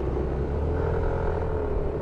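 Yamaha NMAX 155 scooter's single-cylinder engine running steadily under way, a low rumble with a faint steady tone over road noise.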